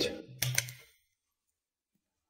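A couple of quick, sharp clicks from a small handheld gadget being fiddled with, about half a second in, then dead silence.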